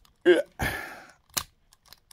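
Hard plastic toy parts handled with a brief rustle, then one sharp plastic click as the tail of a White Tiger Wild Force zord toy is pulled out.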